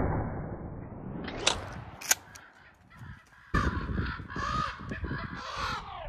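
A flock of crows and ravens cawing loudly from about three and a half seconds in. Before that come the fading end of a 12-gauge shotgun shot and two sharp clicks about half a second apart.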